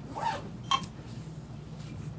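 Quiet room with a steady low hum, broken by two brief light clicks, a fraction of a second and just under a second in.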